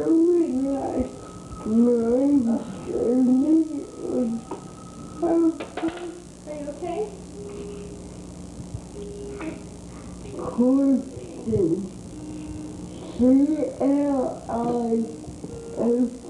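A small child babbling and vocalizing in short bursts of rising and falling pitch, with pauses, over a steady low hum.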